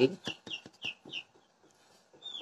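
A bird chirping: about five short, high chirps, each falling in pitch, roughly three a second, stopping a little past halfway, with faint clicks among them.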